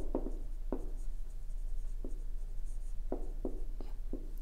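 Marker pen writing on a whiteboard: a string of short, separate strokes and taps as letters are drawn.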